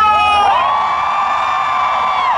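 A single high voice holding one long, level shouted note over crowd cheering. It slides up into the note about half a second in.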